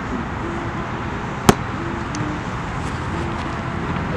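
Steady outdoor hum of distant traffic, with one sharp snap about one and a half seconds in.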